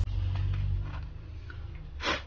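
Faint light ticks and scrapes of a pick tool working along the edges of a Moto G7 Play's frame, cleaning off old screen adhesive, over a low hum that fades after about a second.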